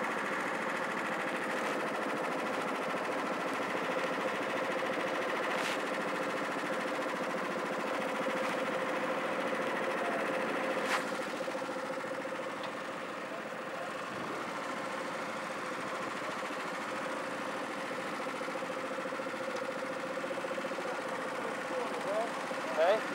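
Small Honda Pro-kart engines idling steadily, a continuous even buzz, with two sharp clicks about six and eleven seconds in.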